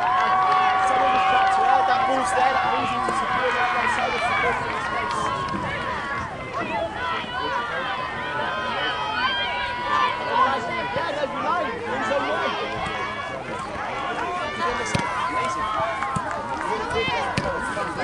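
Many voices calling and shouting over one another, players and spectators at a youth soccer game, with no single clear words. A few of the calls are drawn out and held.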